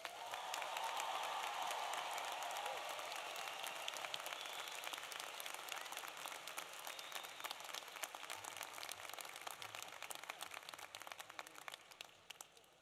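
Audience applause from a large crowd, starting full and slowly dying away to scattered claps near the end.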